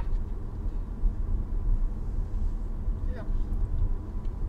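Low, steady rumble of a car's cabin heard from inside the car, with a brief voice sound about three seconds in.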